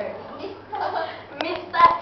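Girls' voices with a few sharp hand claps in the second half, the loudest just before the end.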